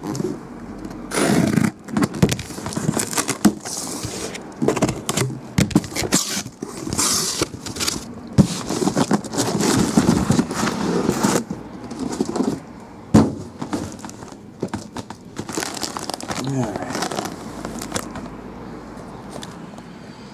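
A cardboard shipping case being opened and the hobby card boxes inside handled: irregular scraping, rustling cardboard and knocks as boxes are slid out and set down on a table.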